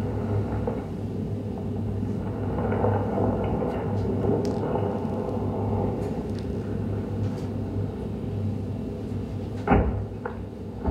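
Dense soundtrack of a projected video piece playing over a hall's speakers: a steady low rumble and hum layered with busy, scattered clicks. A sharp knock sounds near the end.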